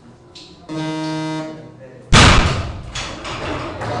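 A short, steady electronic tone sounds for under a second: the referees' down signal for a completed snatch. About a second after it, a loaded barbell dropped from overhead lands loudly on the lifting platform and bounces a few times.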